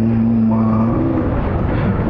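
A man's voice holding a long, steady hesitation hum at one low pitch into a microphone for about a second, then fading.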